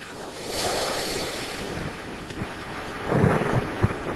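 Amateur rocket stage's spilled propellant burning on the ground: a steady rushing hiss, swelling about half a second in, with a heavier low rumble a little after three seconds.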